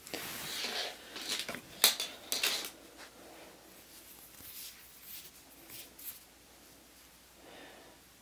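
Yarn and knitted fabric rustling and scraping as a crochet hook is worked through the seam and the yarn pulled through. There is a run of rough strokes and a sharp click about two seconds in, then only faint handling sounds.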